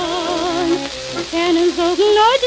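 A woman singing a Yiddish folk song with wide vibrato, holding one long note and then starting a new phrase about a second and a half in, over the steady crackle and hiss of an old 1940s record's surface noise.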